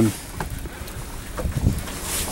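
Wind rumbling on the microphone, with a few faint knocks about halfway through.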